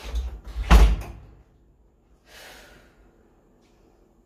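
A wooden bedroom door handled and shut with a loud bang about three-quarters of a second in, after a few lighter knocks of the handle and frame. A fainter brief noise follows a second and a half later.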